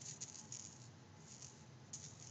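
Cat toy rattling faintly in a few short shakes as a kitten bats at it.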